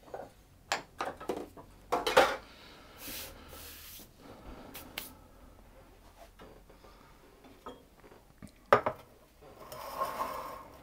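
Kitchen utensils and bakeware clinking and knocking now and then, a few sharp knocks with quiet in between and the loudest one near the end, plus a brief rustling hiss about three seconds in.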